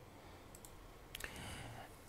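A few faint computer clicks: two light clicks about half a second in and another just after a second, followed by a soft hiss.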